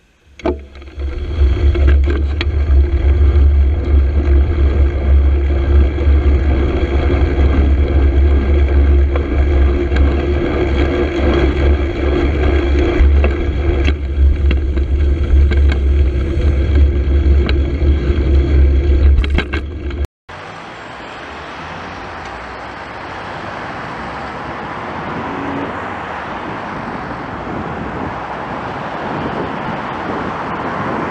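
Road and traffic noise picked up by a bicycle-mounted camera riding among cars: a loud, steady low rumble for about twenty seconds, then an abrupt cut to a quieter, even traffic hiss that slowly grows.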